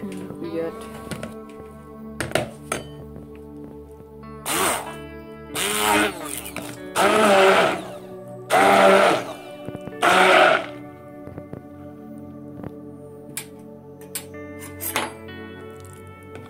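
Hand-held stick blender puréeing soft-boiled cauliflower in a plastic bowl. It is run in about five short bursts, each half a second to a second long, in the middle of the stretch, over steady background music.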